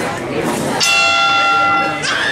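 Boxing ring bell rings once, starting a little under a second in and sounding for about a second, to signal the start of round one. Crowd chatter runs beneath it.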